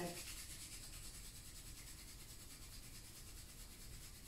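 Two palms rubbing briskly together, a faint, even friction noise.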